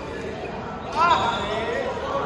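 Players' voices in a large, echoing gym hall, with one short, loud call about a second in.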